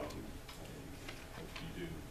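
A quiet pause in a meeting room: faint, low voices and a few soft ticks or clicks scattered through it, before a man starts speaking right at the end.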